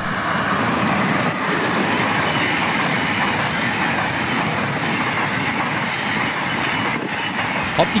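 ICE high-speed train passing close by at speed, a steady rushing noise from its power car and coaches.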